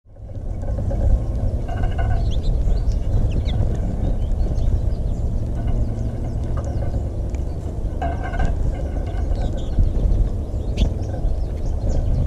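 Scattered high chirps and twitters of American goldfinches, with two louder calls about two seconds in and about eight seconds in, over a loud, steady low rumble.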